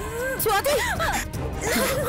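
A woman crying out, high and wavering, over dramatic background music, with noisy rustling swishes.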